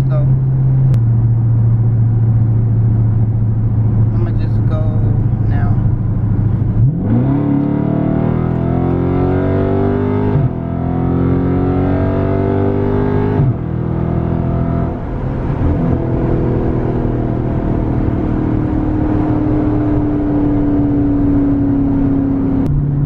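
Dodge Charger Scat Pack's 392 (6.4-litre) HEMI V8 heard from inside the cabin. It cruises steadily, then about a third of the way in the automatic kicks down under full throttle and the revs jump. It pulls hard with rising revs through two quick upshifts, then settles to a steady, slowly falling note as the throttle eases off.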